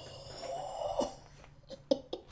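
A man's wordless vocal reaction: a drawn-out exclamation lasting under a second that cuts off sharply, followed by a few soft clicks near the end.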